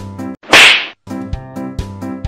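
Loud slap sound effect, about half a second long, about half a second in. Comedy background music with a steady beat cuts out for it and then resumes.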